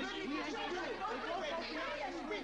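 Several voices talking over one another at once in a continuous jumble of chatter.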